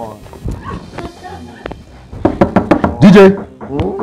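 A woman's loud laughter and voices burst in about halfway through, after a quieter stretch with a few light knocks.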